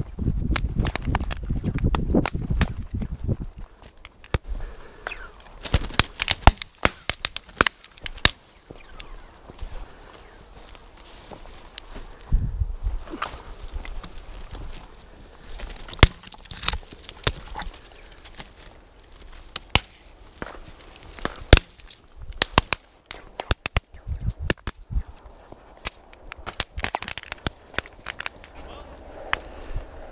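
Footsteps crunching through dry stubble and brittle brush, with twigs snapping and crackling. A few sharp, loud cracks stand out partway through. A low rumble fills the first few seconds.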